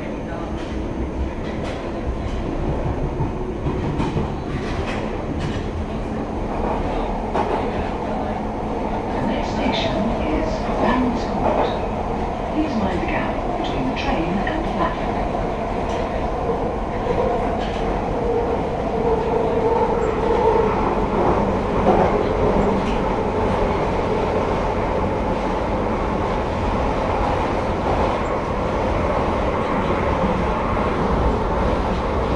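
London Underground Piccadilly line train (1973 Stock) heard from inside the carriage, running through a tunnel: a steady rumble with a run of clicks from the wheels over rail joints, and a whine that grows stronger around the middle.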